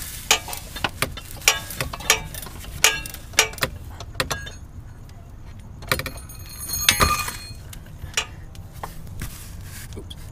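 Hand tools working on the car's underside: a socket wrench and extension clinking and tapping against metal in a run of sharp, irregular clicks for the first four seconds, then a louder metallic clatter with a brief ringing about seven seconds in.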